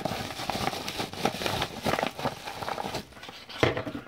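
Brown paper mailer bag crinkling and rustling as it is handled close to the microphone, a dense crackle of small clicks that eases off after about three seconds.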